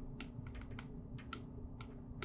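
Stylus tip tapping on a tablet's glass screen during handwriting: faint, irregular clicks, about seven in two seconds, over a low steady hum.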